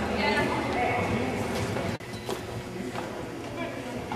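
Indistinct voices and horses moving in an indoor arena with hoof sounds. About halfway through, the sound drops abruptly, and a few sharp knocks follow.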